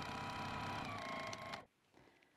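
Juki TL-2000Qi sewing machine running steadily at speed while top-stitching the folded edge of a fabric pocket, then stopping abruptly about a second and a half in.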